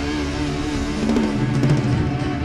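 Live instrumental rock band playing: sustained electric guitar and keyboard notes over bass, with a quick run of drum-kit hits in the second half.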